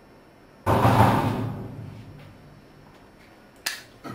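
A door slammed shut about half a second in: one loud bang that dies away over about a second. A short sharp click follows near the end.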